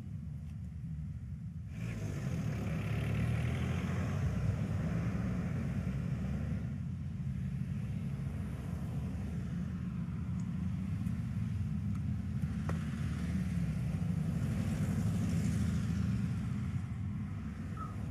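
Steady low rumble of city street traffic, stepping up a little in loudness about two seconds in.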